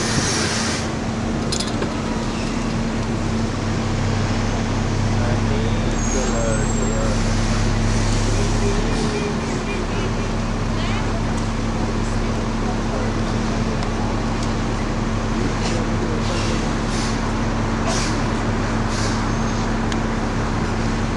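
Bus engine running steadily under way, with continuous road and traffic noise, heard from the upper deck of a double-decker bus. The engine's low hum grows a little stronger for a few seconds early on, then settles.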